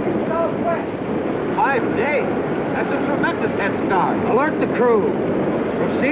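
Steady wind-and-sea noise on a sailing ship, with indistinct voices calling out over it several times.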